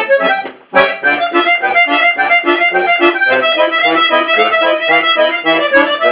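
Bayan (Russian chromatic button accordion) playing a fast, busy passage of many quick notes. It breaks off briefly about half a second in, then comes back with a loud accented chord.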